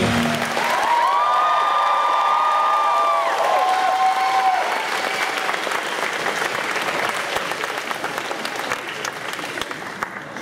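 Audience applause and cheers at the end of a sung stage performance, with drawn-out whoops in the first few seconds. The applause slowly dies down.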